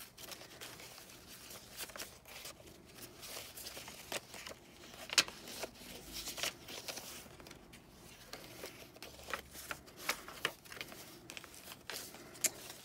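Paper pages and tucked-in cards of a chunky handmade junk journal rustling and crinkling as they are turned and handled, with scattered soft ticks and taps and one sharper click about five seconds in.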